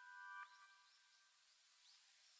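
Near silence, with a faint steady tone that fades out about half a second in.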